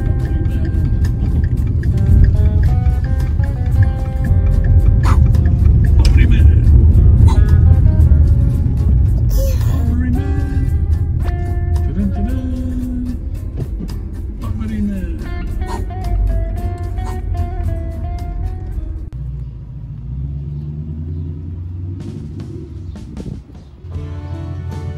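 Low rumble of a car cabin on the road, under background music, with a few brief voice sounds; the rumble drops away near the end.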